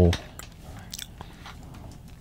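A voice stops right at the start. Then comes a pause of low room noise with a few faint, sharp clicks, small mouth or handling noises close to a desk microphone, about half a second and a second in.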